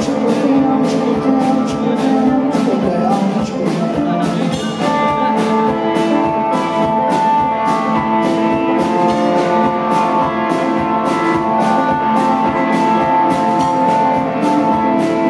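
Live rock band playing: electric guitars over a steady drum-kit beat, with long held lead guitar notes from about five seconds in.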